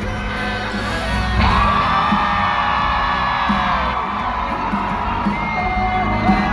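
Live pop-country band music played loud through arena speakers, heard from within the crowd, with cheering around it. A long high-pitched held note rises out of the mix about a second and a half in and falls away about four seconds in.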